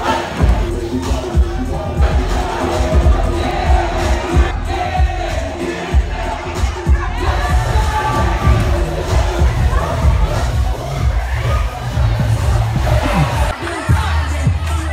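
Loud dance music with heavy bass played over a sound system, under a packed crowd of students shouting and cheering.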